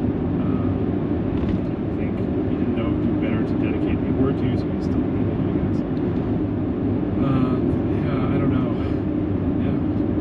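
Steady low road and engine rumble of a moving car, heard from inside the cabin, with faint talk underneath.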